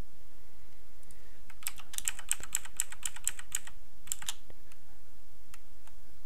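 Computer keyboard typing: a quick run of about a dozen keystrokes in the first half, then a few scattered key taps.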